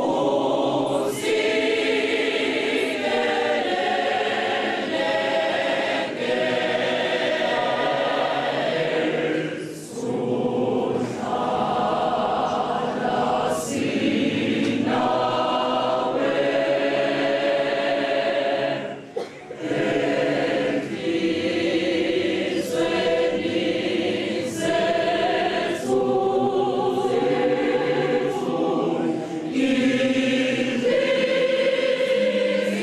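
A church choir of mostly women's voices singing together, with short breaks between phrases about ten and nineteen seconds in.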